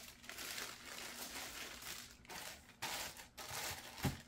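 Clear plastic bag crinkling and rustling in irregular bursts as a model train passenger car is pulled out of it.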